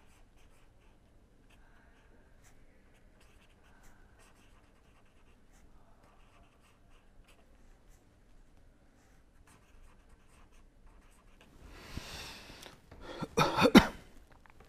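Pen writing on paper: faint, intermittent scratching of handwritten strokes. Near the end, an audible breath in, then a short, louder burst of breathy vocal sound.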